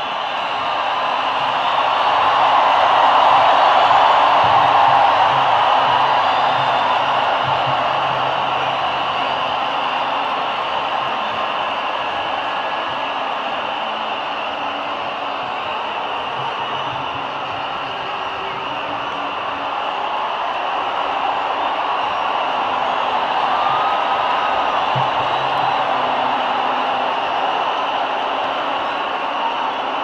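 Large stadium crowd cheering and whooping, a steady roar of many voices that swells in the first few seconds and again near the end.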